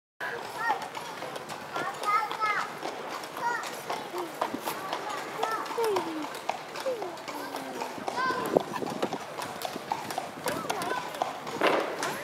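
A horse's hooves clopping on a paved street as it pulls a carriage, in an uneven run of sharp knocks, with people's voices talking over it.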